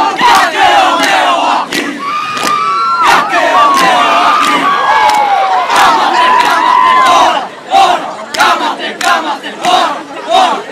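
Crowd of students screaming and cheering, many high-pitched shrieks overlapping, with sharp claps throughout.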